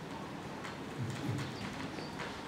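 A pause in the speech: quiet room tone with a few faint, scattered clicks.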